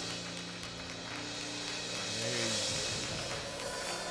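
Church gospel band music: an organ holds sustained chords while the drum kit's cymbals wash over them, with no sharp drum hits.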